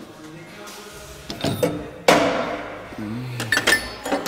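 Metal clanks and clicks as steel pieces are handled at the vise of a horizontal metal-cutting bandsaw that has shut off. There is one sharp ringing clank about halfway through and lighter clicks near the end.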